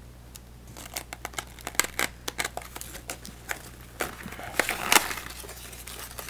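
Packaging of a Yu-Gi-Oh! structure deck crinkling and tearing as it is opened by hand: a run of small irregular crackles that grows busier and louder about four seconds in.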